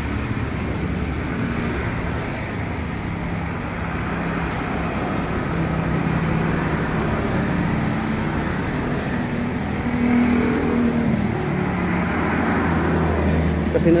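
Road traffic on a wet road: motorcycles and scooters passing with a steady engine hum and tyre hiss, a little louder about ten seconds in.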